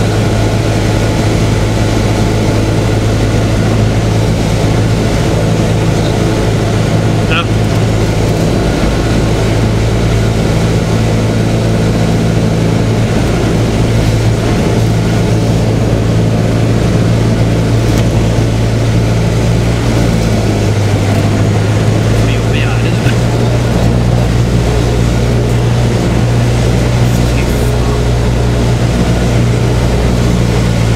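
Cessna 172's piston engine and propeller droning steadily, heard from inside the cabin on final approach to land, with a slight change in pitch about twenty seconds in.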